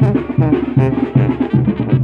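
Brass band music with drums: low brass notes and drum hits keep a steady, fast beat of about three a second, with brass playing above.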